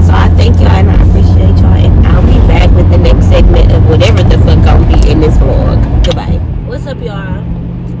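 Loud low rumble of a moving car heard from inside the cabin, with a woman's voice talking under it; the rumble drops away sharply about six seconds in.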